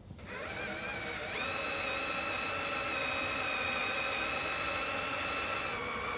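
Cordless drill boring a pilot hole into old steel with the bit biting into the metal, its motor whining steadily. The pitch steps up about a second and a half in as the trigger is squeezed further.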